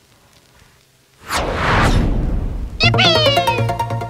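Animated logo sting sound effect: a whoosh a little over a second in, then a bright pitched tone that slides down in pitch over a low steady hum, with a fast glittery ticking.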